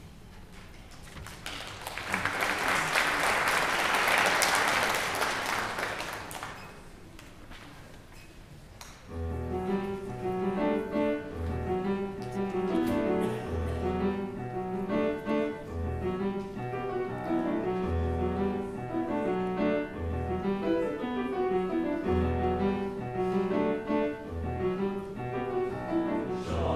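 Audience applause for about four seconds, then after a short lull a grand piano starts a rhythmic introduction to a choral piece, with low bass notes struck about every two seconds.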